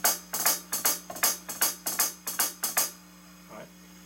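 Electronic drum kit played as a lesson demonstration of drags (two ghost notes leading into an accent) on the hi-hat voice: a quick run of sharp, bright strokes lasting about three seconds, then stopping.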